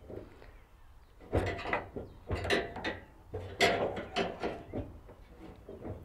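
Screwdriver or pliers clicking and scraping against the wiper transmission arm clips inside the sheet-metal cowl of a 1967-72 Chevy C10, prying at the clips. It comes as a series of short clicks and scrapes starting about a second in.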